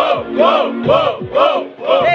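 A hype call of 'uou' shouted over and over in a rising-and-falling pitch, about five times in two seconds, with the crowd joining in over a hip-hop beat's kick drum and bass.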